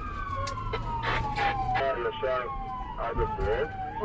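Ambulance siren wailing: one long tone that falls slowly in pitch over about three seconds, then starts to rise again near the end, over a low vehicle rumble.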